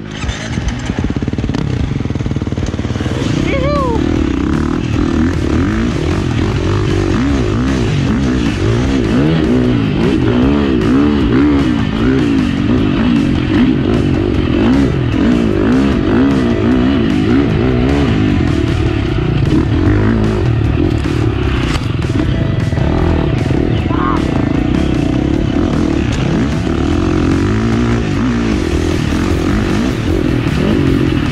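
Husqvarna dirt bike engine heard close up from the bike, revving up and down over and over as it is ridden along a sandy trail.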